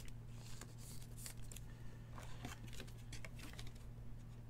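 Faint rustling and scattered light clicks of a trading card being handled and slid into a clear plastic card holder, over a low steady hum.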